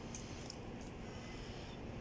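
Quiet steady outdoor background noise with a faint low hum, and a couple of light clicks near the start.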